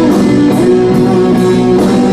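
Live rock band playing: sustained electric guitar chords over bass, with the drummer's cymbals hitting a steady beat about twice a second.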